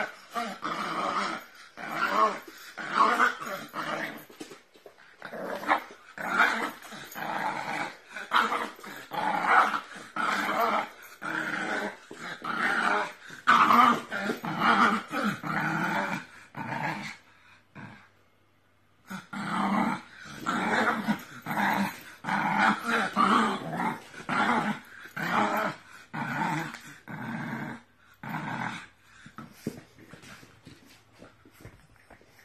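A dog growling in repeated bursts while tugging at a rope toy: play growling in a game of tug-of-war. There is a pause of about two seconds just past the middle.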